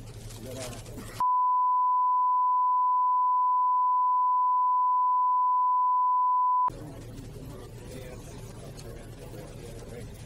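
A steady censor bleep: one pure tone of about 1 kHz, starting about a second in and lasting about five and a half seconds, with all other sound muted under it, the sign that the audio has been redacted. Before and after it, faint room noise with a low hum.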